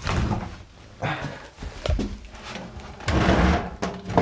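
An old wooden sliding door dragged along its track in several rough, jerky scrapes and knocks.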